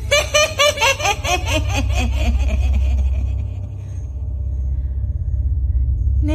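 Ghostly cackling laugh: a quick run of 'ha-ha' syllables, about four a second, falling in pitch and dying away after about three seconds. A steady low rumbling drone runs beneath it.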